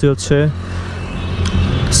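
Suzuki GSX-R150 single-cylinder motorcycle engine running steadily at cruising speed, with road and wind noise, as a steady low hum.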